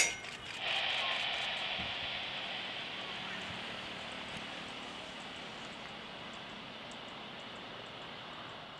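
Jet engines of a Boeing 747 freighter on landing rollout: a broad rushing noise that rises about a second in and slowly fades. A sharp click comes at the very start.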